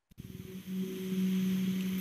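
A click, then a steady low hum with background hiss that swells in over the first half second and then holds steady.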